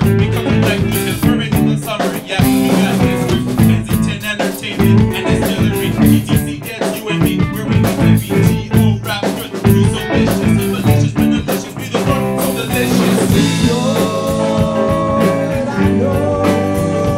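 Live band playing an instrumental stretch of a rock song: electric guitar and drum kit with a steady beat. Over the last couple of seconds some long held notes come in on top.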